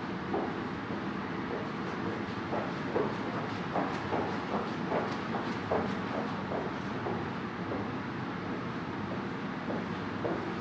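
Footsteps of a person walking briskly on a padded floor, a soft knock about two to three times a second, over a steady rushing background noise.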